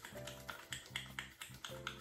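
Wet palms patting together in quick light claps, about four to five a second, spreading liquid toner between the hands, over quiet background music.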